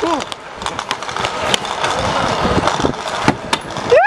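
Stunt scooter wheels rolling over smooth paving: a steady rough rumble with scattered clicks.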